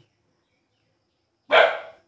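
A dog barks once, short and loud, about one and a half seconds in, after silence.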